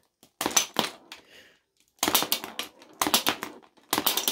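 Sharp hard-plastic clicks and clatter from a B-Daman toy marble shooter being worked and fired, with a marble knocking against plastic blocks and the tray. The clicks come in four quick runs with short quiet gaps between them.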